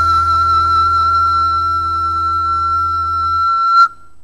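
Pan flute (nai) holding one long high note over a low, sustained accompaniment. The accompaniment fades out and the flute note swells briefly, then cuts off sharply near the end.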